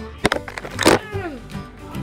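Cats fighting: a couple of clicks, then a sharp hiss about a second in, followed by a short falling yowl.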